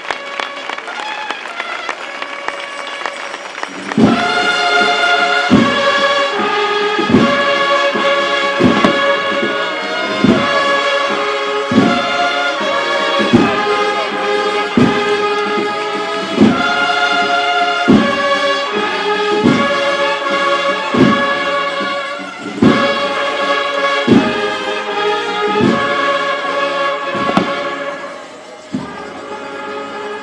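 Crowd noise, then about four seconds in a brass band starts a slow processional march. A heavy drum beat falls about every one and a half seconds under the sustained brass chords.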